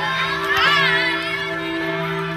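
A group of children shouting and calling out, with one high shriek about half a second in, over a steady low hum.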